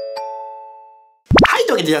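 Short chime jingle over a title card: bell-like notes ring and fade away over about a second, then a quick rising swoosh, after which a man starts talking near the end.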